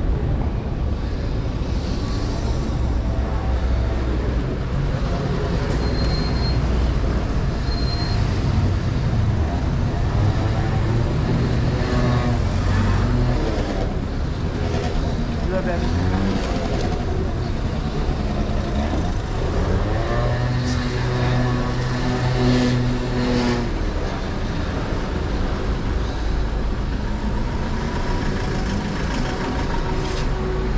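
Urban road traffic heard from a bicycle riding alongside a queue of vehicles: a steady rumble of car, van and bus engines. Between about twelve and twenty-four seconds in, engine notes rise and fall in pitch as vehicles pull away and slow.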